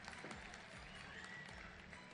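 Near silence: faint background hiss, with a faint thin tone gliding briefly about halfway through.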